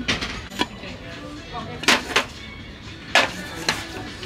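Ceramic and tin goods being handled and set down on a metal store shelf: about half a dozen sharp clinks and knocks at uneven intervals, the loudest about two and three seconds in.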